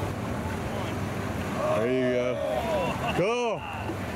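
Voices calling out from a catamaran fishing boat, once about two seconds in and again near the end with a rising-and-falling call. Underneath are its twin Mercury outboards running at low speed and steady wind and water noise.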